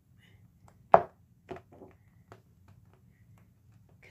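Paper pad being handled on a wooden table as a page is turned: a sharp knock about a second in, then a few lighter taps and ticks.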